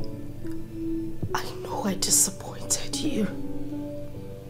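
Soft background music with long held tones, under a woman's breathy, wavering crying sounds from a little after a second in until about three seconds in.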